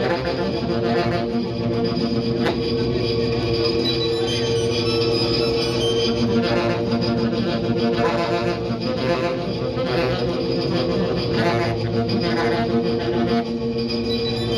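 Saxophone played through effects pedals, a steady layered drone of held tones that sustains without a break.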